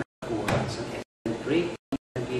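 A man speaking, his voice broken by several abrupt dropouts to silence.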